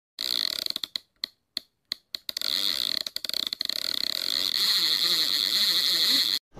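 Logo intro sound effect: a noisy, hissing sound that cuts on and off rapidly for the first couple of seconds, then runs steadily.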